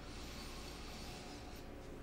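Faint room tone with a soft, slow breath drawn in over the first second and a half, then fading.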